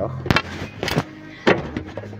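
Beard-care gift tin being handled and its lid worked open: three sharp clicks about half a second apart, over background music.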